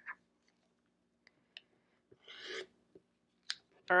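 OLFA rotary cutter rolling along a ruler edge through folded layers of fabric on a cutting mat: one short rasping cut about two seconds in. A few light clicks come from the acrylic ruler and cutter being handled on the mat.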